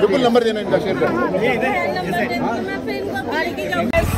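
Several people talking at once in a close crowd, voices overlapping into chatter with no single speaker clear.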